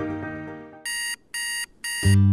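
The last notes of a music bed fade out. Just under a second in, an electronic alarm clock starts beeping: three short, even, high-pitched beeps about half a second apart.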